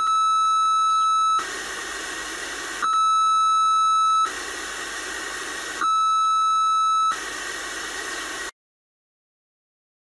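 Audio from a homemade FM receiver picking up a 1.3 kHz test tone from a transmitter that is switched on and off and deliberately over-modulated to 110% FM. The tone sounds three times, each about a second and a half long and about three seconds apart, with hiss from the receiver between; near the end the sound cuts off suddenly.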